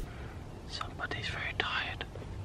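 Whispered speech: a man whispering a short phrase, a little over a second long.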